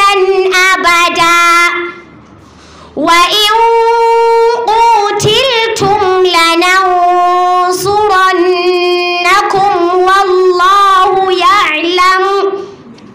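A young girl chanting Qur'an recitation into a microphone in long, melodic held phrases with wavering ornaments. About two seconds in she breaks off briefly for breath, then takes up the chant again.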